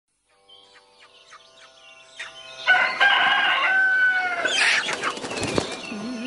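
Bird sounds opening a song: faint repeated chirps, then a loud, long call that rises, holds and falls slightly, followed by a short rush of noise, over a faint held music tone.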